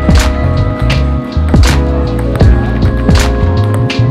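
Chill lo-fi background music: sustained keyboard chords over a bass line, with a steady drum beat about every 0.8 seconds.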